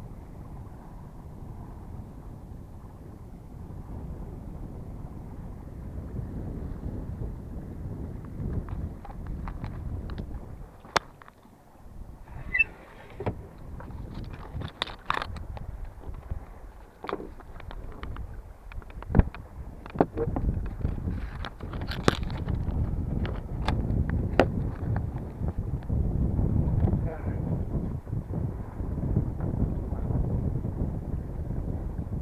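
Steady low wind rumble on an action camera's microphone aboard a small sailboat under sail. Partway through comes a run of sharp knocks and clicks as the camera is handled and moved.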